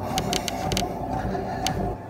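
A machine running with a steady low hum and faint whine, with several sharp clicks, most of them in the first second. This fits a cardio exercise machine in use.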